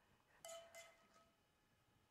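A metal spoon clinking faintly against cookware while spooning pan sauce: one light ringing clink about half a second in, then a couple of fainter clinks, in a near-silent room.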